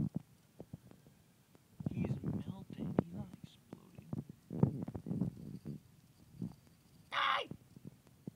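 Indistinct low voices, muttering or whispering, with scattered clicks of a phone being handled, and a short loud hiss of breath or noise about seven seconds in.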